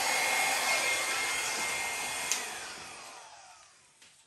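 Small handheld hair dryer blowing air with a steady whine. It is switched off with a click a little over two seconds in, and its whine falls in pitch as the motor spins down and fades out.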